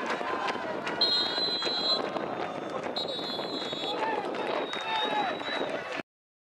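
Players and spectators shouting at a football match, with two one-second blasts of a referee's whistle about a second and three seconds in, and a fainter, longer whistle near the end.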